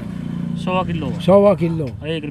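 A man speaking, over the low, steady hum of a motor vehicle engine, which is plainest in the first second.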